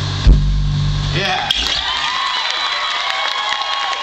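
A band's final chord ringing out, with a loud accented hit about a quarter second in, ending just over a second in. Then the audience cheers and whoops.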